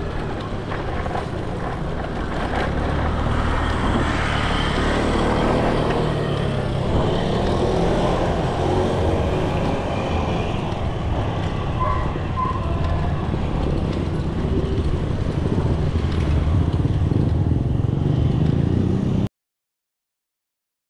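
Steady wind and road rumble on a bike-mounted action camera as a mountain bike rides along asphalt, with a car passing close by. The sound cuts off abruptly shortly before the end.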